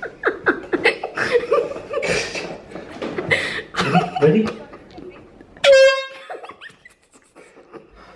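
Hushed voices and giggling, then a single loud horn blast at one steady pitch, about half a second long, near the end.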